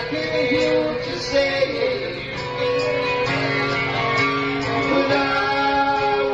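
A live band playing an instrumental stretch of a song, with guitar prominent and held melody notes over the band, on a lo-fi cassette recording.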